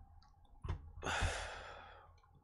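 A man's long sigh, a breathy exhale that starts about a second in and fades away over nearly a second.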